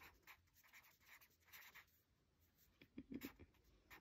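Felt-tip marker writing a word on paper: a few faint, short strokes, slightly louder about three seconds in.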